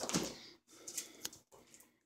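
Quiet room with a few faint, short clicks about a second in.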